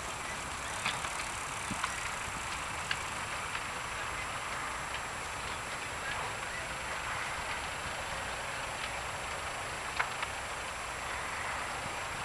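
Large fire burning along a derailed chemical freight train: a steady rushing noise with scattered sharp pops and crackles, the strongest pop about ten seconds in.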